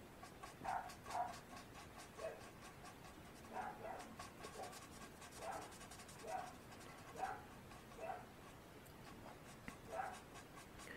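Felt-tip alcohol marker colouring on cardstock: faint scratchy strokes with short squeaks of the tip roughly once a second.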